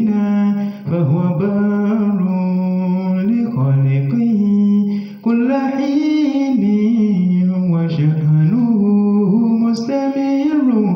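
An unaccompanied voice chanting a poem in a slow, drawn-out melody: long held notes that glide up and down in pitch, broken only by short breaths.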